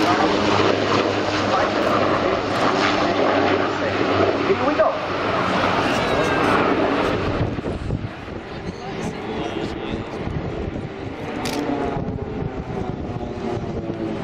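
Formation of Pilatus PC-7 turboprop trainers flying past with a helicopter: a loud, steady drone of propellers and engines that drops away after about seven or eight seconds.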